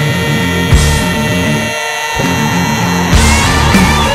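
Recorded rock music: an instrumental passage with electric guitar, with no singing.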